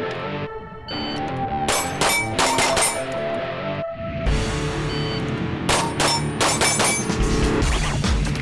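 Two rapid strings of pistol shots, about five each, with the steel plate targets ringing briefly after hits, over background music.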